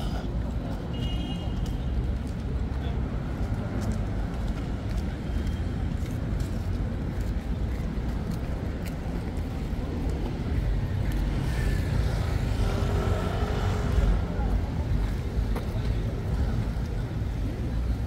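Busy city street ambience: a steady low rumble of traffic, with passers-by talking indistinctly and one voice passing close about two-thirds of the way in.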